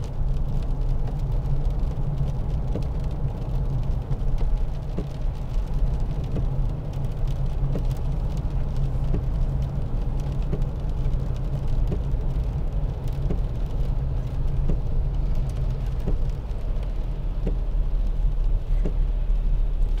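Inside the cab of a moving Mitsubishi L200 2.5 DI-D pickup: the steady low drone of its four-cylinder turbodiesel engine mixed with road noise from the tyres on a wet road.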